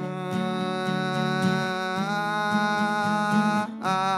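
A male singer holds one long sung note over strummed acoustic guitar. The note bends slightly upward about halfway through, and a new note begins just before the end.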